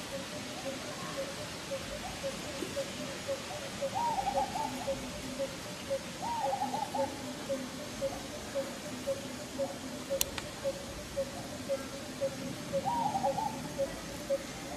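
Animal calls: a steady run of short, low hooting notes, about two to three a second, with three brief warbling calls over them and a single sharp click about ten seconds in.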